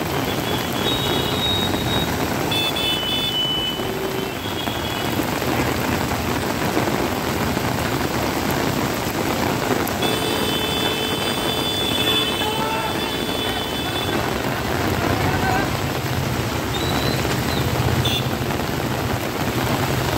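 Heavy monsoon rain pouring down on a city street, a loud steady hiss of rain and running water, with road traffic moving through it. Vehicle horns sound twice, about a second in and again about ten seconds in, and a low engine rumble grows near the end.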